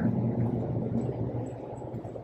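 Steady low mechanical hum of basement utility equipment running, with no sudden events.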